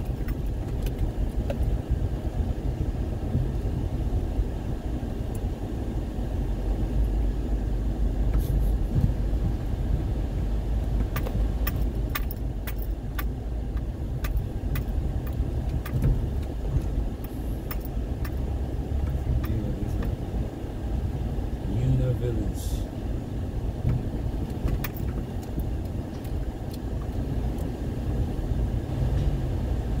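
Inside a car driving slowly on a rough dirt road: a steady low rumble of engine and tyres, with clusters of rattles and knocks from the car jolting over the bumpy surface, about eleven to thirteen seconds in and again a little past twenty seconds.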